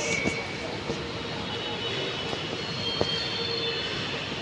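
Steady noise of a metro train running on the track, with faint high whining tones over it and a couple of light clicks.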